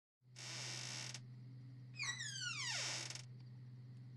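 Film soundtrack effects over a steady low hum: a burst of hiss in the first second, then about two seconds in a pitched sound sliding steeply down in pitch with hiss, lasting about a second.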